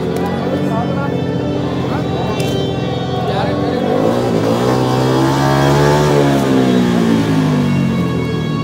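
Motorcycle engine revved up and back down over about four seconds, its pitch climbing to a peak and falling away, heard over background music.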